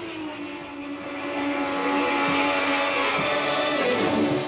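Racing touring car engine running at high revs on the track, one sustained engine note that dips slightly at first, grows louder, and climbs in pitch near the end.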